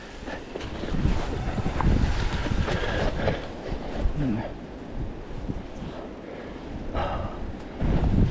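Specialized Kenevo SL mountain bike rolling down a narrow dirt singletrack: tyres rumbling over the ground and the bike rattling over roots and bumps, with a brief louder rustle about seven seconds in.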